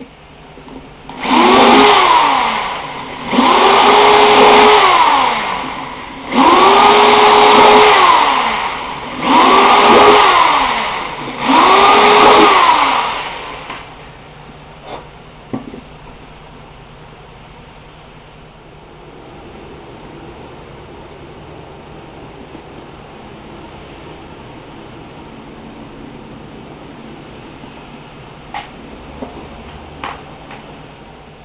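A handheld electric power tool run five times in quick succession: each time the motor whines up, runs for about two seconds and winds down again. After that it is quiet, apart from a few light clicks.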